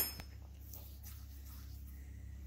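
A low steady hum with a few faint light clicks. At the very start, a short metallic clink dies away.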